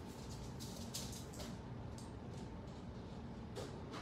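Faint scratchy strokes of a paintbrush on the painted wooden surface of a small surfboard, over a low steady room hum.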